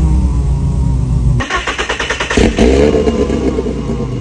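Kimera EVO37's supercharged inline four-cylinder engine running just after start-up. About a second and a half in the sound changes sharply to quick revs that rise and fall.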